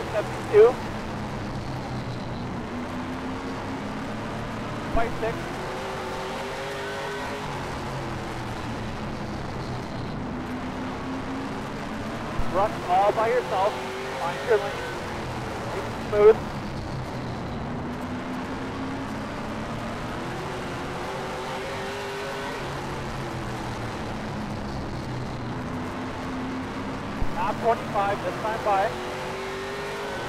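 Late model stock car's V8 engine at racing speed, heard from inside the car, its pitch climbing and falling about every eight seconds as it accelerates down the straights and lifts for the turns.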